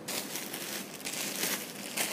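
Clear plastic wrapping crinkling and rustling continuously as a hoop petticoat wrapped in it is handled.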